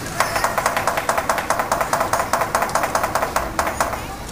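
Lion dance percussion playing a fast, even beat of about seven strokes a second, starting just after the beginning and breaking off near the end.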